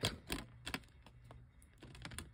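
A few faint, sharp plastic clicks of a DVD being pressed down on the centre hub of its case and handled in the tray.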